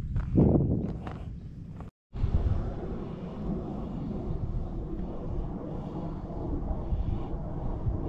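Wind buffeting the microphone, a steady low rumble of noise, broken by a split-second dropout about two seconds in.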